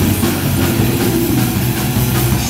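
Live d-beat/thrash punk-metal band playing loud: distorted electric guitars and bass over a drum kit, with a dense, continuous low end.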